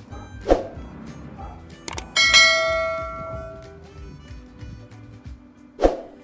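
Outro background music with sound effects laid over it: a sharp hit about half a second in, a click, and a bright bell ding about two seconds in that rings for about a second and a half. Another sharp hit comes near the end.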